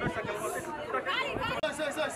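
People talking and chattering in the background, several voices at once.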